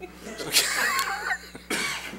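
Short, breathy bursts of human vocal sound, one about half a second in and a shorter one near the end, cough-like and close to laughter, over a steady low room hum.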